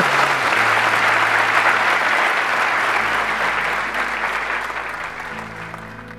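Audience applauding, the clapping dying away over the last couple of seconds, with steady low background music underneath.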